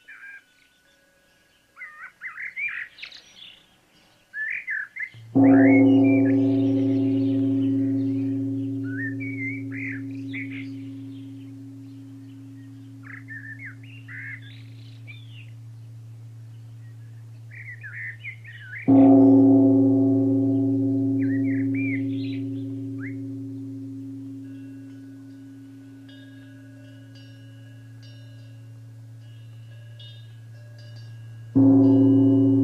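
A deep-toned bell is struck twice, about fourteen seconds apart, each stroke ringing on and slowly fading. Small birds chirp throughout.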